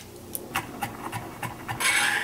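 Chef's knife chopping garlic on a wooden cutting board, a quick run of light taps about three a second, then a louder scrape near the end as the blade gathers the minced garlic.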